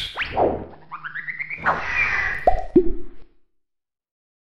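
Cartoon-style animated-intro sound effects: swishes and rising, whistle-like glides, then two quick popping blips that drop in pitch. The sounds stop a little after three seconds in.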